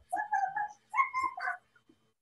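Two short, high-pitched whimpering calls, like a small animal's, each about half a second long.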